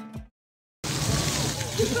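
Music fades out and cuts to a moment of silence, then the steady splashing of fountain water jets starts with voices of people talking.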